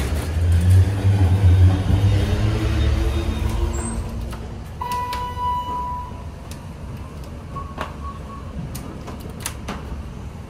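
TK Oildraulic hydraulic elevator car: a knock as the doors shut, then a low hum of the car travelling that fades out about four seconds in. An electronic chime of about a second follows, likely the floor-arrival signal, with a fainter broken beep a few seconds later.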